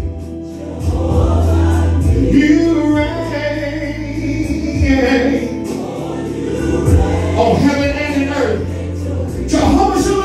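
Gospel worship music: choir voices over long held bass notes, with a man singing lead into a handheld microphone at times.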